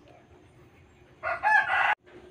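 A rooster crowing, starting a little over a second in and cut off abruptly before the crow finishes.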